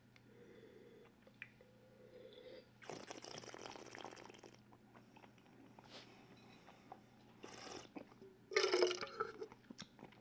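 Quiet tasting of sparkling wine: a soft slurping rush lasting about a second and a half as the wine is drawn and swished in the mouth, with faint clicks, and a light knock as the flute is set down on the table.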